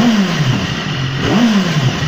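2011 BMW S1000RR inline-four engine with a Scorpion exhaust, idling and blipped twice: each time the revs jump quickly and fall back to idle over about half a second, the second blip a little over a second after the first.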